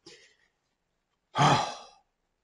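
A man's single breathy, voiced sigh, about one and a half seconds in.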